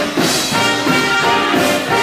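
Swing jazz with brass (trumpets and trombones) over a steady, quick beat.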